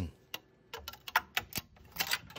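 A string of sharp, irregular clicks and ticks of hard plastic, about six or seven in two seconds, from freshly printed silk PLA rocket parts being handled on the printer's build plate.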